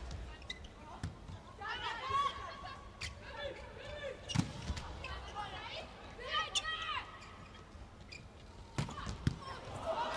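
Indoor volleyball rally: the ball is struck sharply several times by hands and arms, the loudest hit about four and a half seconds in. Voices sound in the arena between the hits.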